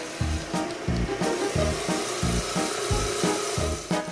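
Cartoon jackhammer sound effect: a steady, noisy drilling into rock that stops near the end, over background music with a steady beat.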